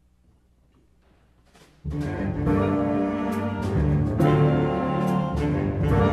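Near silence, then about two seconds in a jazz big band comes in all at once, brass and double bass playing together with sharp accents.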